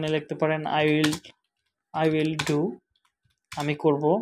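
Computer keyboard keys clicking as a short phrase is typed, under a man's voice speaking in three short stretches.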